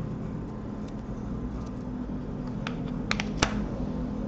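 A small wooden cigarette box being handled and closed, with four light clicks about three seconds in, the last the loudest, as its magnetic parts snap shut. A steady low hum runs underneath.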